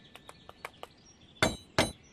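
Knuckles knocking on a wooden door: two sharp knocks about a third of a second apart in the second half, after a few faint light ticks.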